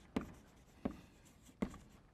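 Chalk writing on a blackboard: three sharp taps about 0.7 s apart, with faint scratching between them.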